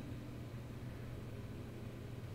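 Quiet room tone: a faint steady low hum with light hiss, with no distinct events.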